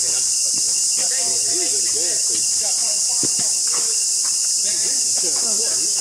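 Loud, steady, high-pitched drone of a forest insect chorus, with faint voices lower down.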